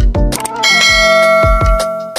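Outro music with a drum beat. About half a second in, a bright bell chime rings out and holds for over a second: the notification-bell sound effect of a subscribe-button animation.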